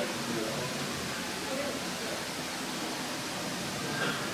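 Indistinct background chatter over a steady room hiss, with no clear mechanical event.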